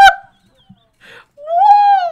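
A person's high-pitched squealing laugh: one held note, rising and then falling in pitch, about a second and a half in, after a short intake of breath.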